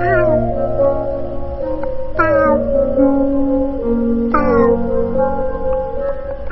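Music of sustained notes with a cat's meow laid over it, repeated three times about two seconds apart, each falling in pitch.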